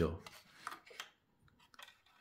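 Light clicks and scrapes of 3D-printed plastic model-aircraft parts being handled, fitted together and set down on a tabletop: a couple of single ticks, then a short cluster of small knocks near the end.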